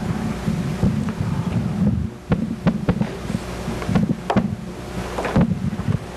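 Low rumble close to the microphone with scattered knocks, clicks and rustles, the sound of someone moving and brushing past right beside it.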